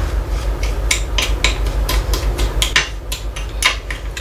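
A small metal spoon stirring brown-dyed granulated sugar in a small glass bowl, gritty scraping and clinking against the glass in quick, uneven strokes, a few a second, over a low steady hum.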